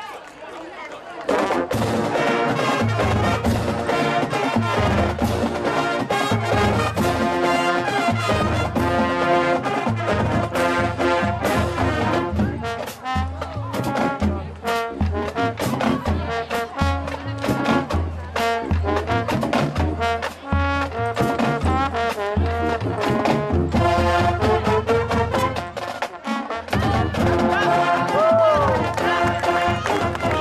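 High school marching band starting its halftime show about a second in: brass playing over a drumline's steady beat.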